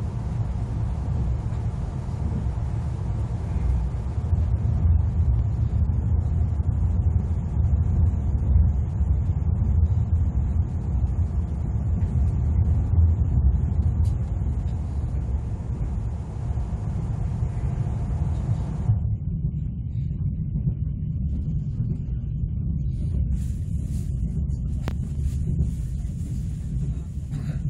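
Steady low rumble of an ITX-Saemaeul electric train running along the track, heard from inside the carriage. The sound turns duller about three-quarters of the way through. A few sharp clicks come near the end as another train passes close alongside.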